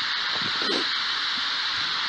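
Ghost radio (spirit box) static: a steady hiss, with a brief faint voice-like fragment about half a second in.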